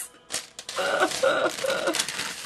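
A woman laughing in about three short pulses, after a brief pause.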